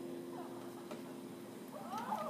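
Fender acoustic guitar's last strummed chord ringing out and fading away over the first second and a half. Near the end comes a short high vocal sound that rises and falls in pitch.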